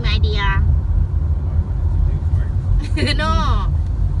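Car driving along a paved road heard from inside the cabin with a window open: a steady low noise of tyres, engine and wind buffeting through the open window.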